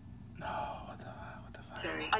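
A short whisper about half a second in, then a woman's voice beginning a line of film dialogue near the end, played back from the trailer.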